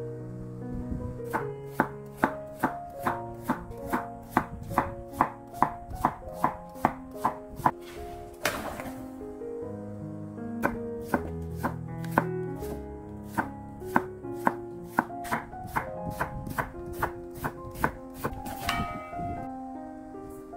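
Kitchen knife slicing an aged cucumber (nogak) into thick slices on a cutting board, each stroke a sharp knock, about two to three a second, in two long runs. A brief swish follows each run.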